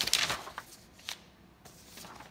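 Paper sheets rustling as they are handled, followed by a few light taps.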